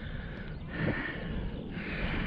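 A man breathing near the microphone, soft airy exhales over a low wind rumble.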